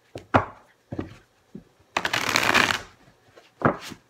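A deck of cards being shuffled by hand: a few short sharp clicks of the cards, then a dense riffling rustle of about a second starting about two seconds in, and one more click near the end.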